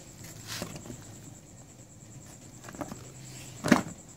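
Handling noises as a motorcycle carburetor is moved about on a table: light scrapes and small clicks, then a single sharp knock near the end.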